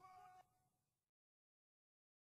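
Near silence: a faint pitched sound with a steady tone and short falling glides fades out and stops about half a second in, then dead silence.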